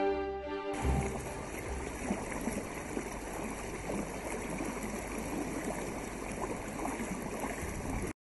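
Music ends about a second in and gives way to a steady rush of moving water with small splashes and gurgles.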